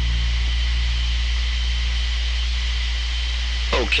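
Steady hum and hiss of an astronaut radio transmission channel in a pause between calls, with a faint steady high tone over it. A man's voice comes in over the radio near the end.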